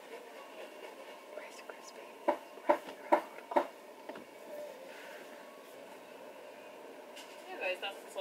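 Faint, indistinct speech over a low steady car-cabin hush, with a few short word-like bursts between about two and four seconds in.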